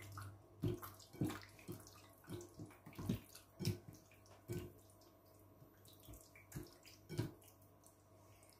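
A hand squishing raw chicken pieces through a thick yogurt marinade in a glass bowl: faint wet squelches, roughly one a second, at an irregular pace.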